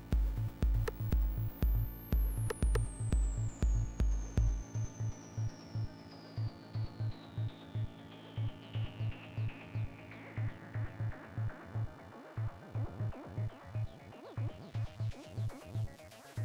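Electronic house/acid-techno track made on a Roland JD-Xi synthesizer, with a steady kick drum at about two beats a second. The deep bass under the kick drops out about five seconds in, while a long synth tone sweeps steadily down in pitch over roughly ten seconds. A brighter synth pattern comes in near the end.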